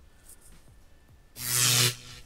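iMovie's built-in electricity sound effect playing back: a loud electric buzz with a low hum under a wide crackling hiss, starting suddenly past the middle and lasting about half a second before it cuts off.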